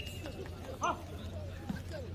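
Several people's voices calling out on a sports court, with one short, louder shout a little under a second in, over a steady low hum.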